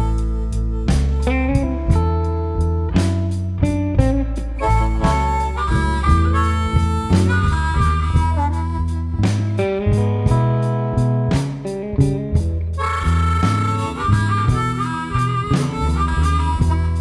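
Live electric blues band: a harmonica played cupped to a handheld microphone takes the lead over electric guitar, bass guitar and drums keeping a steady beat.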